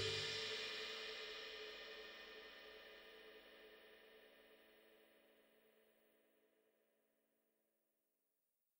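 The last ringing of the background music's cymbal fading away over about two seconds after the track ends, then near silence.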